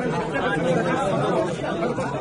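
Crowd of men talking over one another: steady overlapping chatter with no single clear voice.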